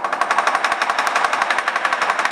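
Lion dance drum and cymbals in a loud, fast, steady roll of many strokes a second.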